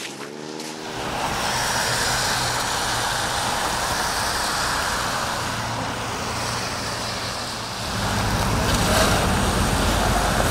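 Street traffic on a wet road: cars passing with a steady tyre hiss. It gets louder, with a deeper rumble, from about eight seconds in.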